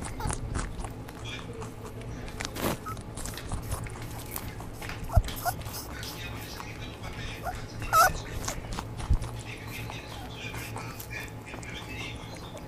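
Rabbits rustling and chewing grass in a plastic basket: a steady run of small crisp clicks and crunches, with two sharp low knocks and a brief high chirping call about two-thirds of the way through.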